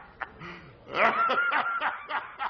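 A man laughing heartily in repeated bursts, quieter at first, then a loud peal of laughter about a second in.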